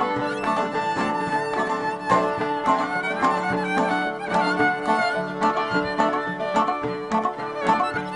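A traditional folk ensemble playing an instrumental passage: a violin carries the melody over plucked strings (oud, guitar and a lap zither), with accordion and a hand drum.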